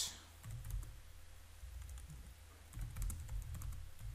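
Typing on a computer keyboard: a run of faint key clicks, a few near the start and more in the second half, over a low steady hum.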